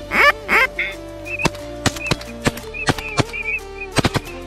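Ducks quacking loudly, about three calls in the first second, over background music with a steady drone and sharp percussive hits that carry on after the calls end.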